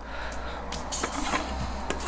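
Handling noise from a melamine ashtray shell being turned over in the hand: faint rubbing and light clicks of fingers on the plastic, with a brief rustle about a second in, over a low steady hum.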